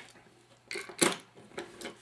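A few light knocks and clicks of a light switch and its mounting strap being handled and set into an electrical box, the loudest about a second in.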